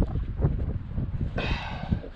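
Wind rumbling on the microphone, easing off partway through, with a short rustling hiss near the end.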